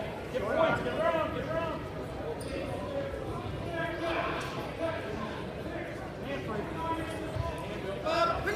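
Indistinct shouting from several voices, coaches and spectators calling out to youth wrestlers, with dull thumps underneath.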